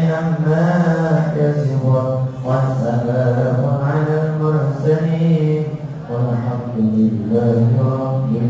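A man's voice chanting a Muslim supplication prayer (doa) into a microphone, in long held, melodic phrases with short breaths between them.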